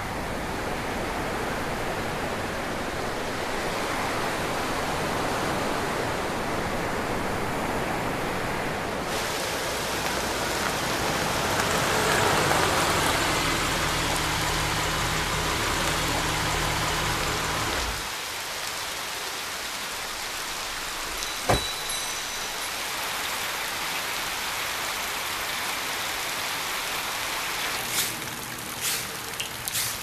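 Steady rushing noise, surf at first and then heavy rain. The deep rumble drops away about two-thirds of the way through, leaving a lighter rain hiss, with one sharp knock shortly after.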